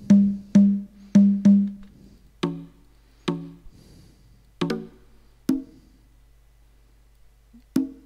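Sampled conga drum hits from a software percussion kit. In the first second and a half the low conga plays four quick strokes of a rumba pattern. After that, single conga strokes of differing pitch sound one at a time, a second or more apart.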